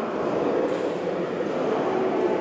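Steady, indistinct murmur of many voices blurred by the echo of a large church hall, with no words standing out.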